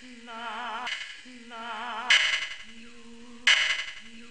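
A soprano sings two short low-pitched notes with vibrato on the syllables 'la' and 'lu', recorded inside an MRI scanner. Residual gradient noise from the scanner buzzes throughout, with two louder bursts about two seconds and three and a half seconds in.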